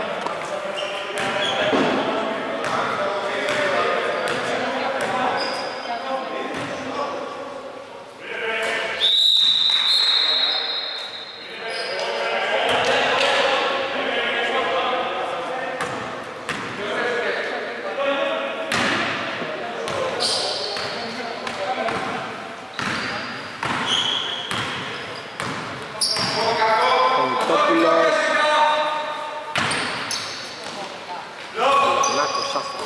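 A basketball bouncing on a wooden gym floor, with players' voices echoing in a large hall. A high, steady whistle sounds once about nine seconds in, lasting a second or two.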